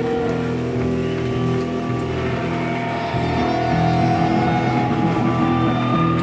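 Live rock band's electric guitars and bass ringing out in long, held, droning tones, with some notes slowly wavering in pitch.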